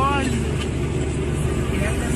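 Steady low engine hum of a vehicle, heard from inside a car. A voice trails off just after the start and voices begin again near the end.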